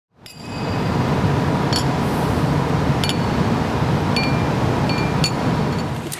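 Steady outdoor background noise fading in, with a handful of short, ringing metallic clinks scattered through it.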